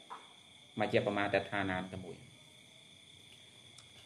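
A man speaks briefly about a second in, then pauses, leaving a steady, high-pitched chirring of crickets in the background.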